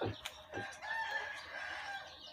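A rooster crowing: one long, held call that starts a little under a second in, after a couple of short knocks.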